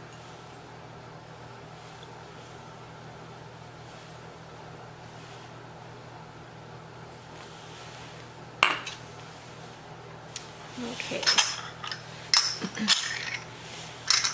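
Steady low room hum, then a single sharp knock of a ceramic ramekin set down on the stone counter, followed by a quick run of clinks as small glass coddling cups are handled against each other and the counter near the end.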